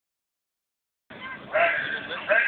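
Silence for about the first second, then high-pitched voices of people calling out, rising to their loudest for the last half second.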